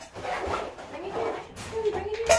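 Labrador retriever whining in several short, bending whimpers, with one sharp knock about one and a half seconds in.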